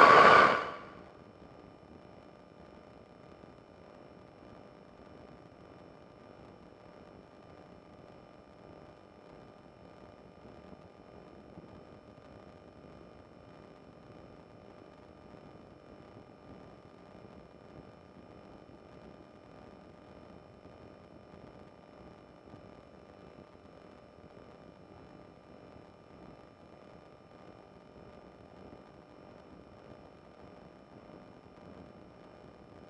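A loud sound cuts off abruptly under a second in, as a voice-operated intercom feed closes. It leaves a faint steady hiss with a few thin, steady high tones: the recording line's noise, with the engine shut out.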